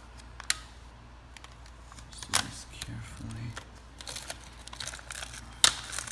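Shiny plastic protective bags crinkling and rustling as they are handled around glass nixie tubes, with scattered small clicks and a sharp tap near the end.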